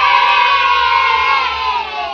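A group of children cheering in one long, drawn-out 'yay' that dips slightly in pitch and fades near the end.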